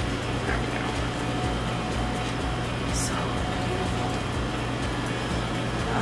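Steady low hum of a refrigerated flower cooler and an air conditioner/dehumidifier running, with a faint steady whine above it.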